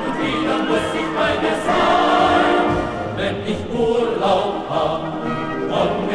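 Choir singing a German soldiers' song with instrumental accompaniment, in a dull, narrow-sounding old recording.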